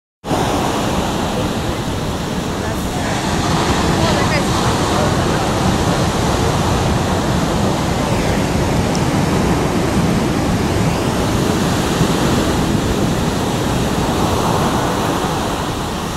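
Steady roar of heavy ocean surf breaking, with wind on the microphone; it starts suddenly right at the beginning.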